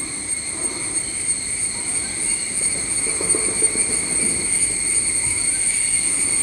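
Steady high-pitched chorus of insects droning without a break, in several unwavering tones.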